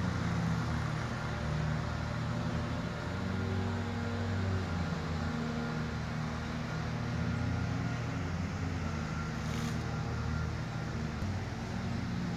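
Wind buffeting the microphone outdoors: a continuous low rumble that swells and eases, with a brief hiss about ten seconds in.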